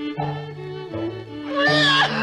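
Orchestral cartoon score playing. About a second and a half in, a loud cartoon lion's vocal wail rises over it, wavering in pitch.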